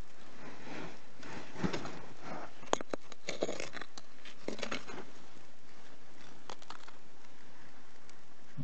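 Clay soil being scraped and crumbled away by a small metal blade and a gloved hand, in uneven strokes with a few sharp clicks of the blade against stone about halfway through.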